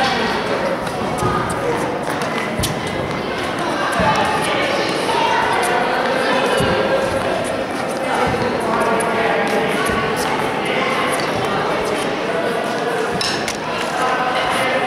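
Tennis balls being struck by a racket and bouncing on an indoor hard court, a handful of sharp knocks a couple of seconds apart, over constant chatter of many voices echoing in a large sports hall.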